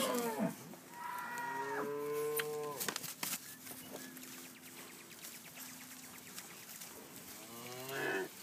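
Cattle from a herd of Brangus cows and Charolais-cross calves mooing. A long moo comes about a second in and lasts about two seconds, a fainter low moo follows mid-way, and another begins near the end.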